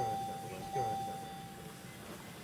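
A steady electronic alarm tone from a bedside patient monitor, held for nearly two seconds and then stopping, over low voices. It sounds while the patient shows no pulse and no cardiac electrical activity.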